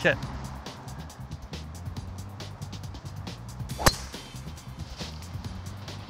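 A single sharp crack of a driver striking a golf ball about four seconds in, over steady background music.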